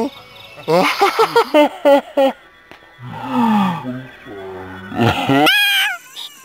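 A person's voice making wordless, animal-like vocal noises. There is a quick run of short calls that rise in pitch, then a low call that falls in pitch, and a loud cry sliding upward shortly before the end.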